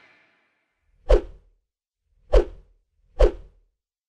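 Three short sound-effect swooshes for an animated TV station logo, each with a deep thump at its start and a quick fade, the first about a second in and the others about a second apart.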